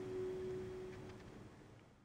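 The last ukulele chord ringing out after the final strum, one low note lingering and fading away about a second and a half in.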